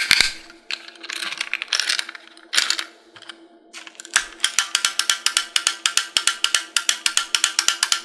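Plastic wind-up toy duck, first handled with a few rasping scrapes, then its clockwork running from about four seconds in with a rapid, even clicking, about seven clicks a second.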